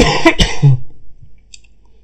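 A person coughing: a short, loud burst of two quick coughs in under a second, at the start.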